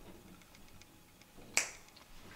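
Quiet room tone with one short, sharp click about one and a half seconds in.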